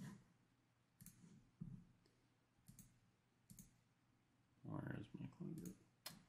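A few faint computer mouse clicks, spaced roughly a second apart, over near silence, with a brief soft murmur of voice near the end.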